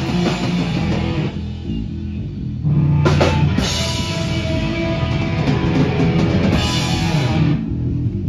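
Hardcore punk band playing live on electric guitar, bass guitar and drum kit. About a second in the sound thins to the low end for a moment, then the full band comes back in louder about three seconds in and drives on.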